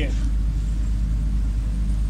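A steady low rumble with nothing else standing out, in a gap between spoken phrases.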